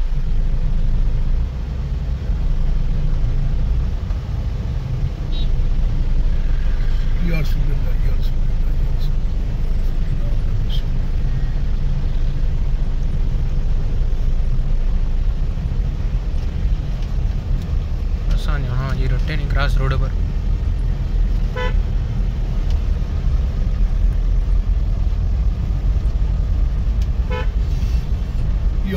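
Steady low rumble of a car's engine and tyres heard from inside the cabin while driving slowly through busy street traffic. Brief voices and short horn toots from the street sound over it.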